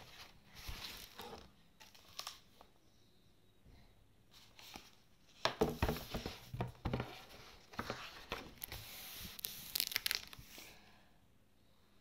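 Paper rustling and crinkling as the pages of an illustrated story book are handled, in a series of crackly rustles that are busiest from about five and a half to ten and a half seconds in.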